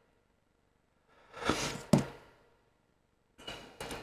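Scissors cutting through a cotton pad: one crunching snip about a second and a half in, ending in a sharp click as the blades close. Fainter rustling and small clicks near the end.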